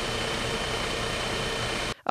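A steady hissing noise with a faint low hum, ending suddenly near the end.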